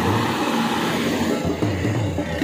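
Isuzu bus's diesel engine running as the bus passes close by, over the steady din of a busy bus stand.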